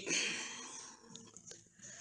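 Quiet pause: a faint breath-like noise fading out over about a second, then two soft clicks.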